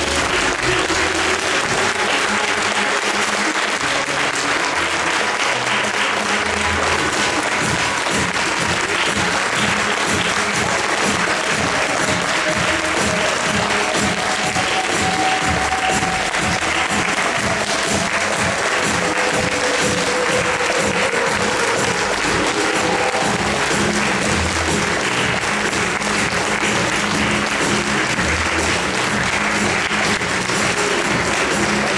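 Audience applauding steadily over recorded music, whose steady beat becomes prominent about eight seconds in.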